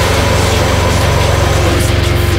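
Heavy metal band playing an instrumental passage with no vocals: distorted guitars and drums over a dense, driving low end that pulses fast and evenly.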